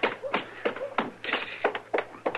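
Hurried footsteps, about three steps a second, each a sharp tap: a radio-drama footstep sound effect of someone rushing up.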